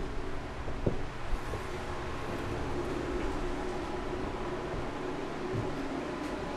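A steady low mechanical hum with hiss, with a few short knocks in the first second and a half.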